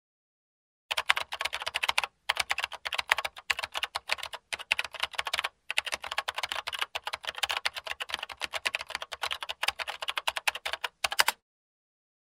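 Rapid clicking of keys being typed on a keyboard. It runs in several quick bursts broken by short pauses, starting about a second in and stopping shortly before the end.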